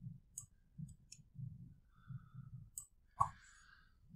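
Faint, scattered light clicks, with a short breath-like sound a little after three seconds in, over quiet room noise.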